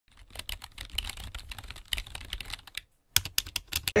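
A rapid, irregular run of light clicks and taps, pausing briefly about three seconds in, then a few louder clicks near the end.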